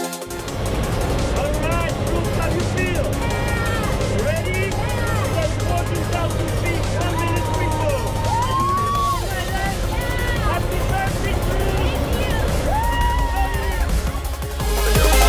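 Steady low drone of a small jump plane's engine heard inside the cabin, with excited voices calling and shouting over it.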